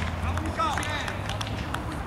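Men's voices shouting on an outdoor football pitch, with a few sharp knocks and a low steady hum underneath that stops near the end.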